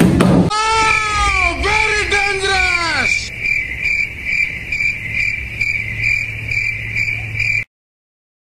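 Edited-in comic sound effects: two falling, wobbling wails, then a steady high cricket-like chirping pulsing two to three times a second, cut off abruptly shortly before the end.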